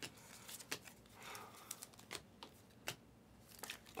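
Faint, irregular clicks and light rustle of trading cards being flipped through by hand, each card slid off the front of the stack.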